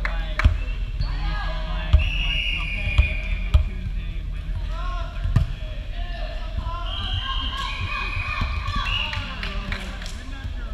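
A volleyball thudding on a hardwood gym floor and against hands, with about five sharp impacts in the first half. Brief high sneaker squeaks and players' voices run underneath.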